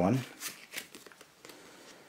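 A few faint, light clicks and rustles of a playing-card deck and its cardboard tuck box being handled.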